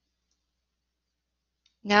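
Near silence (room tone), then a woman's voice starts speaking near the end.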